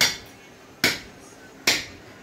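Butcher's blade striking meat and bone in regular chopping blows: three sharp, ringing strikes a little under a second apart.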